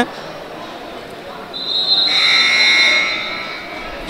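Basketball arena buzzer sounding for about a second and a half, a high, harsh multi-tone blare over the murmur of the hall, signalling a timeout.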